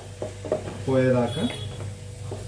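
A spatula stirring drumstick (moringa pod) pieces in a cooking pot on a gas stove, with a few short knocks and scrapes against the pot and light sizzling underneath.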